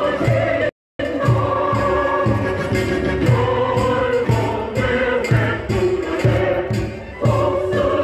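Many voices singing a song together over music with a steady low drum beat, a little over two beats a second. The sound cuts out completely for a moment just under a second in.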